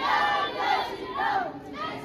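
A group of children's voices shouting together, high-pitched calls that rise and fall and come in waves.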